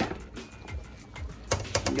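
A metal spoon stirring wet cornmeal in a stainless steel pan, making quick clicks and scrapes against the pan, loudest near the end. Background music plays along.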